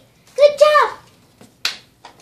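A child's short voiced syllable about a third of the way in, then a single sharp finger snap near the end.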